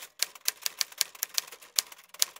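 Typewriter key-strike sound effect: a quick run of sharp clicks, about six or seven a second, one per letter as an on-screen title types out.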